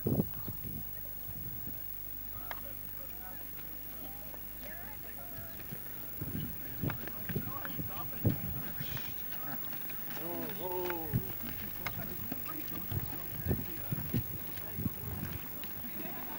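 Donkey hooves clip-clopping in uneven steps on a stony dirt track, starting about six seconds in, with distant voices.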